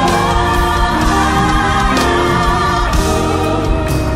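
A gospel choir singing loudly together with a live band of keyboard and drums.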